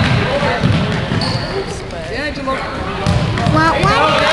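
A basketball being dribbled on a hardwood gym floor, its bounces thudding repeatedly, with voices of players and spectators over it.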